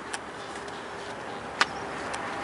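Steady background hiss with a faint click near the start and a sharper single click about a second and a half in.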